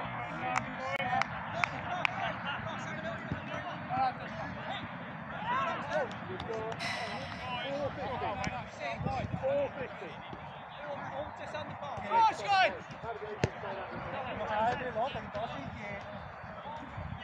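Players' shouts carrying across an outdoor football pitch, with scattered sharp thuds of a football being kicked.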